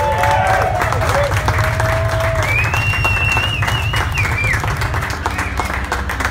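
Audience applauding and clapping as a rock song ends, with the last guitar notes ringing out and dying away in the first couple of seconds over a steady low hum. A thin, drawn-out high tone sounds in the middle.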